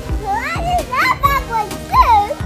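A young child's high voice making wordless squeals and sounds that glide up and down, over steady background music.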